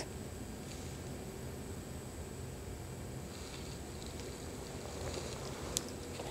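Quiet room tone: a low steady hiss with faint rustling, and one short click near the end.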